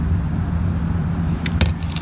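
A steady low hum with a faint steady tone in it, and a few short knocks near the end.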